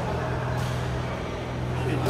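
Steady low hum and background noise of a large indoor badminton hall, with faint voices and one short sharp hit about half a second in.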